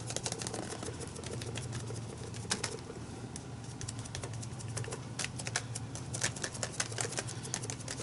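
Foam sponge dabbing paint through a plastic stencil onto a paper journal page: quick, irregular soft taps, with a steady low hum underneath.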